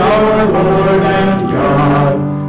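Congregation singing a hymn in long, held notes, with a short break between phrases about one and a half seconds in.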